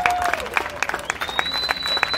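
Audience and stage guests applauding, a dense patter of hand claps. A thin, high, steady tone joins about a second in.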